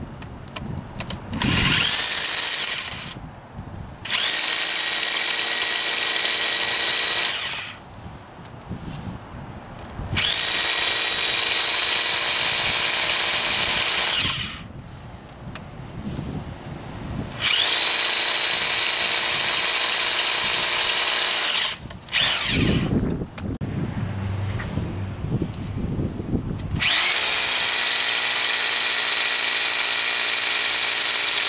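Electric hammer drill with a carbide-tipped rock bit boring into hard quartz in five bursts of a few seconds each, running with a high steady whine. Between bursts the bit is cooled in a bowl of water to keep it from overheating, and there are quieter handling and water sounds.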